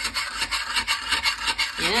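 A pumice stone toilet cleaner scrubbing the inside of a porcelain toilet bowl: a quick back-and-forth rasping at about four strokes a second, grinding away the stains.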